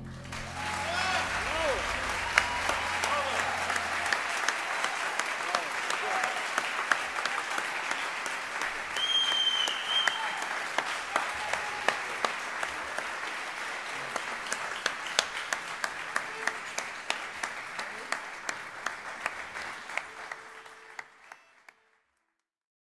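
Audience applauding and cheering at the end of a live song, with a few shouted calls. The band's last low note rings on under the clapping for the first few seconds, and the applause fades out near the end.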